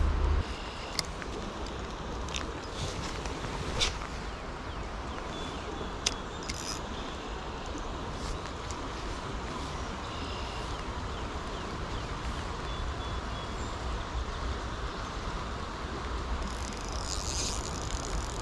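Steady hiss of rain falling on a flowing river, with a low wind rumble and a few sharp ticks in the first six seconds. Near the end, a spinning reel is cranked.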